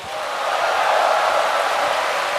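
Audience applause, swelling over the first second and then holding steady.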